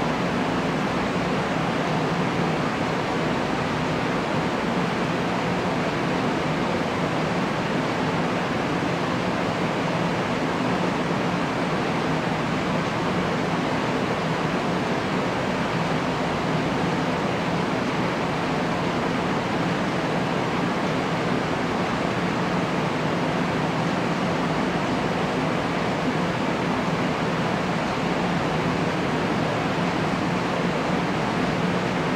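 Steady, even hiss-like noise with a faint low hum underneath and no other events.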